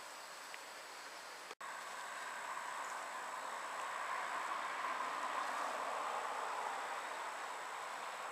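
Steady outdoor hiss with no clear single source. It swells somewhat through the middle and eases near the end, with a brief dropout about one and a half seconds in.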